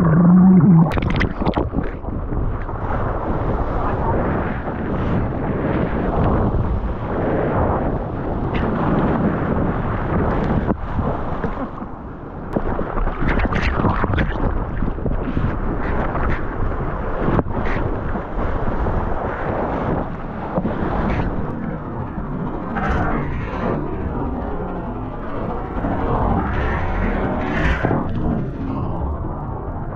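Seawater rushing and churning around a surfboard-mounted action camera as it goes under and back through the surface of the waves: a steady loud wash broken by many short splashes and knocks.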